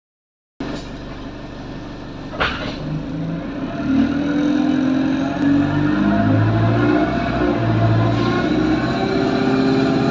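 Alexander Dennis Enviro200 single-deck bus running, heard from inside the saloon. The diesel engine and drivetrain hum gets louder about four seconds in, with its pitch shifting up and down as the bus gets under way. There is a single knock or rattle about two seconds in.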